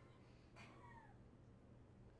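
Near silence: room tone with a faint low hum, and a faint brief falling squeak a little after half a second in.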